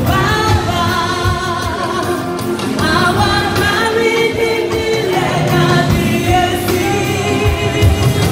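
A large church choir singing together over instrumental backing with a steady low beat.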